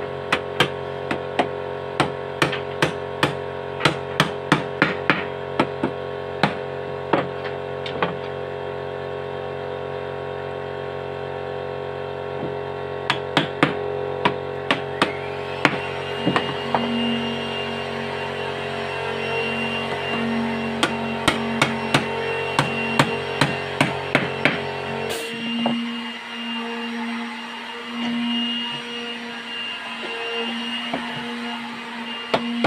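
Hammer knocking wooden door panel boards down into the groove of a frame rail, in runs of sharp blows with pauses between, over background music.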